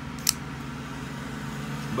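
A single sharp click, about a quarter of a second in, as the Revo Ness folding knife's blade swings open and locks. A steady low hum runs underneath.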